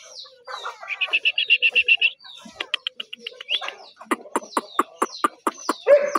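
Birds chirping: a quick, even trill of high chirps, then a steady series of short, sharp, falling chirps about five a second.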